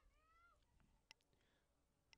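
Near silence, with a faint brief wavering pitched sound in the first half-second and a couple of tiny clicks.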